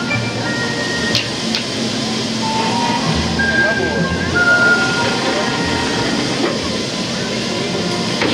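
A pedestrian ferry docking: a low rumble from the ferry under crowd chatter, with short high steady tones coming and going and a couple of clicks a little after a second in.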